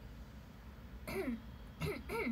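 A young woman's short vocal sounds: a brief falling-pitch syllable about a second in, a quick sharp burst near the end, then another falling syllable, over a faint room hum.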